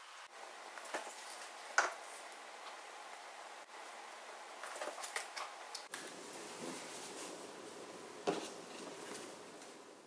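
Quiet handling of paper and cardstock: light rustling and small clicks as a paper envelope and card are picked up and laid down, with a sharper click about two seconds in and another about eight seconds in.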